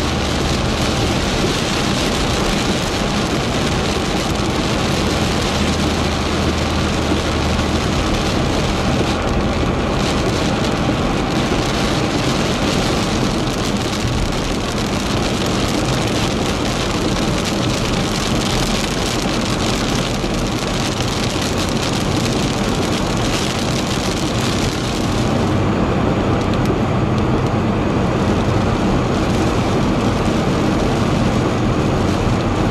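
Heavy rain falling on a moving car's roof and windscreen, heard from inside the cabin, over a steady engine and the hiss of tyres on the wet road. The rain's high hiss thins somewhat near the end.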